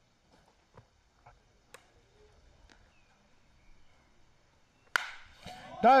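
Near-quiet ballpark with a few faint clicks. About five seconds in comes one sharp crack of a bat hitting a baseball for a home run, followed by a commentator starting to speak.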